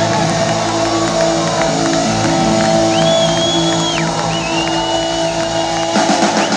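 Live band holding a ringing chord on electric guitars and bass guitar. Two long high whistles sound over it, about three and four and a half seconds in.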